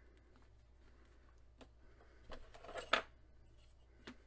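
Hands handling a paper card and stickers on a tabletop, with faint clicks and then a short rustle ending in a sharp tap about three seconds in, as a ruler is laid on the card.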